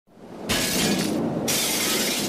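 Glass shattering, two bright crashes, the first about half a second in and the second about a second and a half in.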